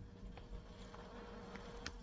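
Faint steady electrical hum under low room noise, with two faint ticks of a stylus on a tablet screen, one about half a second in and one near the end.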